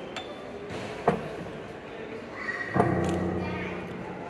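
Upright piano keys struck one at a time by an untrained child: a high treble note, a sharp note about a second in, then a loud low chord of several keys near three seconds that rings on and slowly fades.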